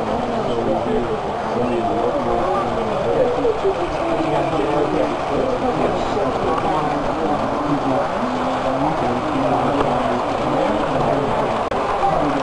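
Indistinct chatter of many people talking at once, with the steady low rumble of model trains running on the layout beneath it.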